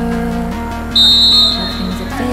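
Electronic dance music with a short, loud, high-pitched referee's whistle blast about a second in, signalling the free kick.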